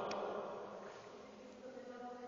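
Faint, steady buzzing hum with a single short click just after the start.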